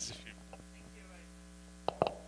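Steady electrical mains hum, with a sharp click near the end.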